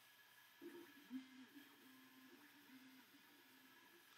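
Faint whine of the Wainlux K10 laser engraver's stepper motors, jumping between a few pitches as the laser head traces a square around the print area in preview mode.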